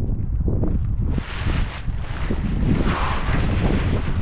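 Wind buffeting the microphone on an exposed mountain summit, a heavy uneven rumble, with a stronger gust of hiss for most of the second half.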